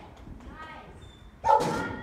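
A dog barks once, loud and sudden, about one and a half seconds in.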